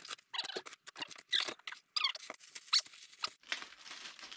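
Hands rummaging through shredded paper packing in a cardboard box of parts: irregular rustling and crinkling, with a few short high squeaks.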